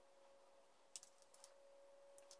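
Near silence: room tone with a faint steady hum and a few faint clicks from small wooden parts and a plastic CA glue bottle being handled, the clearest about a second in.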